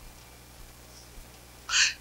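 Quiet room tone with a low steady electrical hum through the microphone system. Near the end comes a short, loud breathy hiss into the microphone: the lecturer drawing breath before he speaks.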